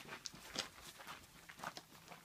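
A few faint, short scuffs and sniffs from a scent-detection dog working on a leash along a trailer over dry grass and dirt.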